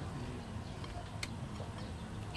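Quiet low background hum, with one faint click just past a second in, as a knife cuts through a soft block of fresh white cheese on a ceramic plate.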